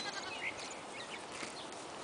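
Faint sounds of a cow and calf grazing, tearing and chewing grass, with a few faint bird chirps.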